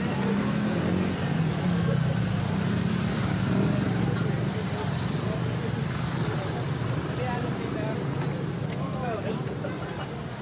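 Busy street-market ambience: a steady low rumble of road traffic and engines running close by, with crowd chatter underneath. The rumble is strongest in the first half and eases a little toward the end.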